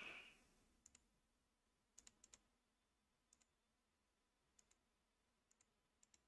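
Near silence broken by a scattered handful of faint computer mouse clicks, some in quick pairs.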